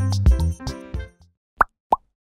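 Background music with a steady beat fades out about a second in. Two short, rising 'plop' sound effects follow, one right after the other.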